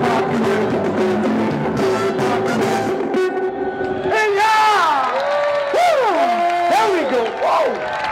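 Live funk band of Mardi Gras Indian performers playing, with a held note, until the music breaks off about three seconds in. Then a voice through the PA calls out in long swooping glides over the crowd.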